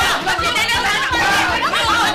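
Several people shouting and talking over one another at once, loud and overlapping, in a heated argument.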